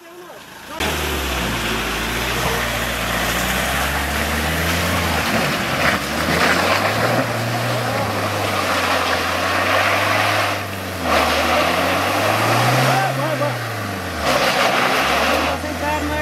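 SUV engine revving hard under load as the vehicle drives through deep mud, with a loud rushing noise of the tyres churning the ruts. The engine comes in suddenly less than a second in, and the revs swell up and fall back twice as the throttle is worked.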